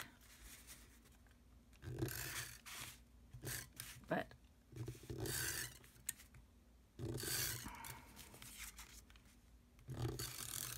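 Tape runner laying strips of permanent adhesive onto the back of a paper mat, three short rasping strokes about two, five and seven seconds in, with paper handled between them.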